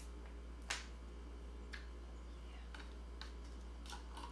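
Light clicks and taps from a small plastic tub of cream cheese being handled over a plastic food container: about five scattered clicks, the loudest under a second in, over a steady low hum.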